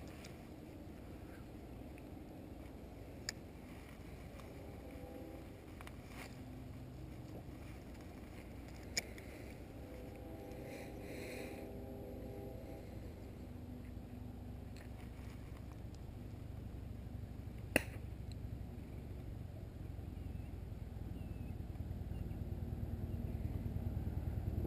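Quiet open-air ambience with a low rumble, like wind on the microphone, that grows toward the end, broken by three single sharp clicks at about 3, 9 and 18 seconds in.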